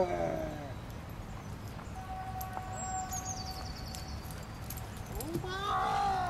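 A voice calling out in drawn-out, sliding tones just at the start and again near the end. About three seconds in there is a quick, high run of descending chirps.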